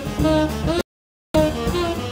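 Live jazz quartet playing, with saxophone, piano, upright bass and drums. About a second in, the sound cuts out abruptly to total silence for about half a second, then comes back.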